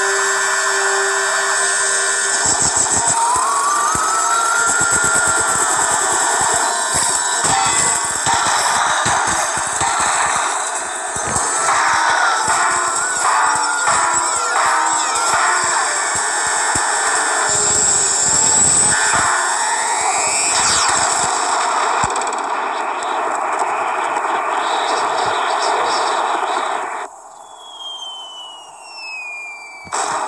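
Cartoon soundtrack of music mixed with sci-fi sound effects for an energy beam and bubble. Near the end the din drops away and a long falling whistle slides down in pitch.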